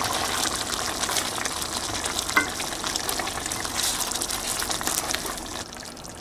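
Oxtail stew in tomato sauce bubbling and crackling at a boil in a pot, with a steady sizzle of fine pops and a small knock of the spatula against the pot about two seconds in.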